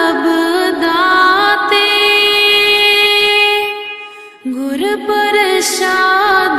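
Devotional singing with musical accompaniment: a voice gliding between notes and holding one long note, with a short break about four seconds in before the melody resumes lower.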